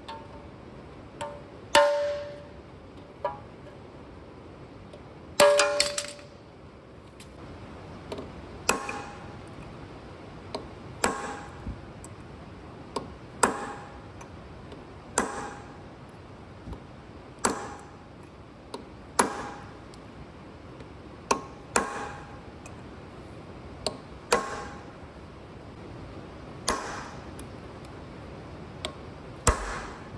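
Hammer blows on a steel chisel held against the rear crankshaft seal of a Caterpillar 3406E diesel, driving the seal's lip down to break it loose: sharp metal strikes about every two seconds, the first few ringing.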